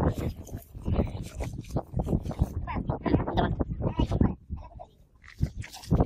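Men's voices talking and calling out in short, uneven bursts while they work.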